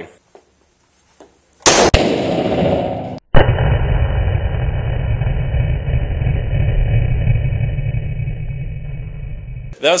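.308 rifle shot about two seconds in, echoing hard off the walls of an indoor range. About a second later comes a second sharp blast, followed by a long, muffled, low rumble that lasts about six seconds.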